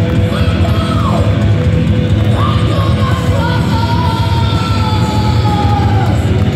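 Heavy metal band playing live, loud drums and bass under a high, drawn-out vocal wail that bends early on and then holds one long note, sinking slightly toward the end.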